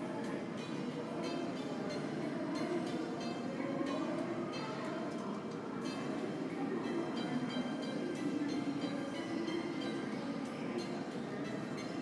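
Steady airport terminal ambience: a constant low hum of the building, with faint higher tones over it.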